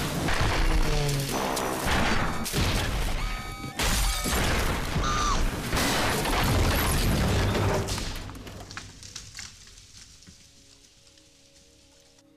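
Small plane crashing down through jungle trees: a run of loud crashes, impacts and screeching metal. The crashes die away after about eight seconds, fading to quiet.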